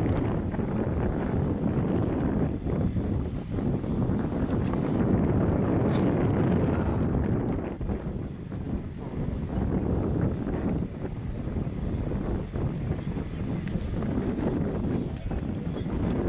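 Wind buffeting the microphone: a steady low rumbling noise with a few faint clicks.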